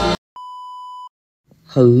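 Music cuts off at the start, then a single steady high-pitched electronic beep at one pitch, under a second long, in silence. A man's voice begins near the end.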